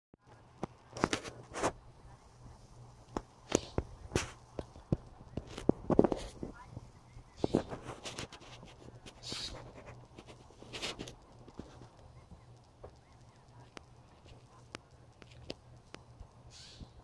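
Blue jay giving short, harsh scolding calls mixed with sharp clicks, mobbing a cat near what is likely its nest. The calls are busiest in the first eleven seconds and then thin out.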